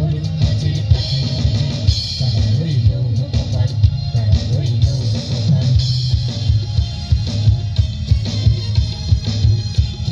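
Live band music played loud over the loudspeakers, with heavy bass and a steady drum beat.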